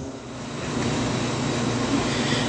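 Steady rushing room noise with a faint low hum, swelling over the first half second and then holding level.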